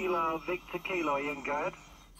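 A man's voice received off the air on a homebuilt 40-metre regenerative receiver, coming through its speaker thin and narrow with no deep tones. The talking stops shortly before the end.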